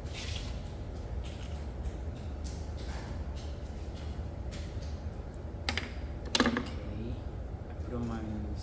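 A pottery tool scratching a clay handle in short, quick strokes, scoring the surface so it will join to the cup. A brief louder voice sound comes about six and a half seconds in.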